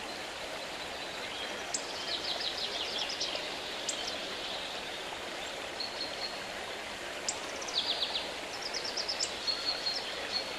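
Steady rush of running water with small birds chirping in quick trills, about two seconds in and again from about eight seconds on.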